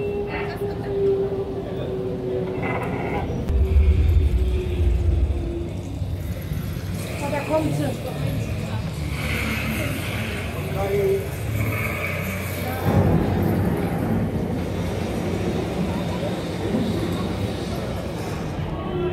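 Background chatter of other visitors over ambient music, with a held low note in the first few seconds and a deep rumble about four seconds in, the loudest moment.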